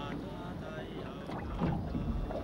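A held pitched tone fades out in the first second. From about a second and a half in, the uneven water and wind noise of a small open boat at sea grows louder.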